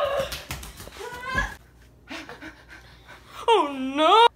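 A child's wordless high-pitched cries and breathing during rough play, with a few knocks in the first second or so. Near the end comes one loud drawn-out cry that dips and then rises in pitch.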